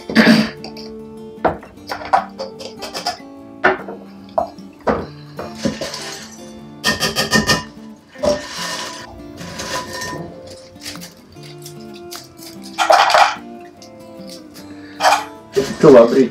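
Background music, with intermittent clinks, knocks and a short clatter as a hand-blender chopper attachment is taken apart and its beaker is emptied and scraped into a glass bowl.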